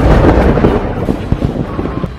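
A loud explosion-like boom dying away in a low rumble with crackling, fading over the two seconds.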